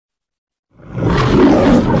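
A lion-style roar, as in the MGM studio logo, starting after about three-quarters of a second of silence and running loud to the end.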